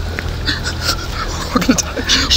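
A man's muffled whimpering and panicked breathing through a hand clamped over his mouth, with short rising whimpers near the end and a low steady rumble beneath.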